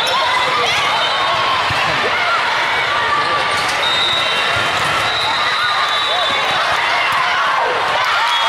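Volleyball rally in a busy gymnasium: many overlapping voices from players and spectators, sneakers squeaking on the sport court, and the ball being struck now and then.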